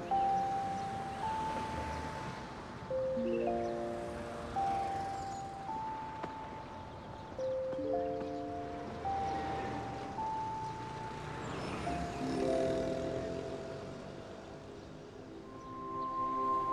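Gentle background music: a slow melody of long held notes over soft chords.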